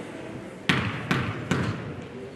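A basketball dribbled three times on a hardwood gym floor, about two and a half bounces a second, by a player at the free-throw line before her shot. Each bounce rings briefly in the large gym.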